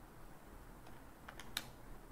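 A few light clicks in quick succession in the second second, the last one the loudest: a stylus tapping on a tablet screen while writing.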